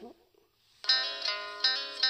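Instrumental intro of a country-ballad karaoke backing track. It starts just under a second in, after a short silence, as a steady run of sustained, plucked-sounding notes.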